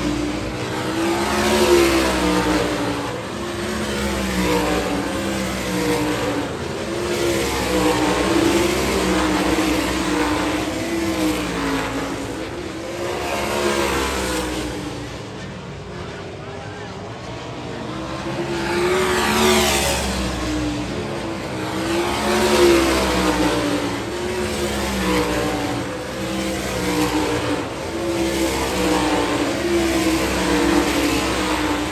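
A pack of dirt-track race cars running laps. Their engines rise and fall in pitch as they pass and brake and accelerate through the turns, in swells every few seconds.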